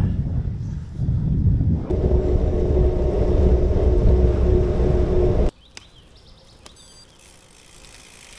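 Wind buffeting the DJI Osmo Action 3's foam-padded microphone while riding a bicycle, a loud low rumble with a steady hum joining it about two seconds in. The rumble cuts off suddenly about five and a half seconds in, leaving a quiet outdoor background with a few faint ticks.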